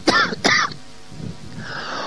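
A man's voice makes two short vocal sounds, falling in pitch, about half a second apart. A faint breathy hiss follows near the end.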